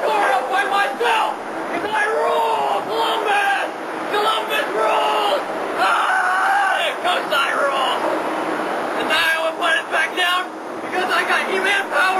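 Several people's voices talking and calling out over one another, the words unclear, like crowd chatter.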